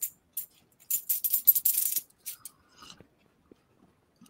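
Small hard objects clinking and jingling in a brief metallic rattle lasting about a second, starting about a second in, followed by a few fainter clicks.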